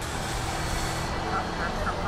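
Gas station fuel dispenser pumping gasoline into a car's tank, giving a steady hum and hiss.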